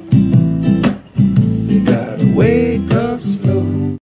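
An acoustic guitar strumming the closing chords of a song, with a short break about a second in, then stopping abruptly.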